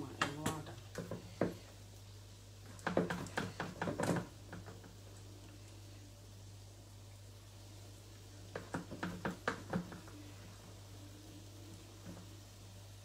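Three short runs of quick, sharp knocks and taps, with a steady low hum underneath.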